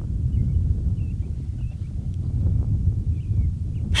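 Low wind rumble on the microphone, with small birds chirping faintly now and then.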